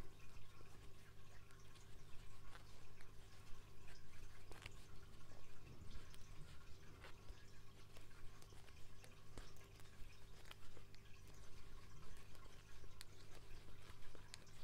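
Faint, irregular clicks and light rustling of bamboo circular knitting needles working fluffy chenille-type yarn by hand, over a steady low hum.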